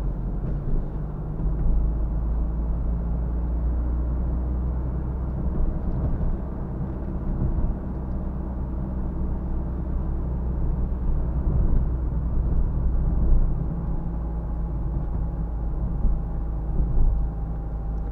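Interior sound of a Renault Clio IV 1.5 dCi four-cylinder turbodiesel being driven: a steady engine drone and tyre and road rumble heard from inside the cabin. The car picks up speed to about 58 km/h and then eases off again.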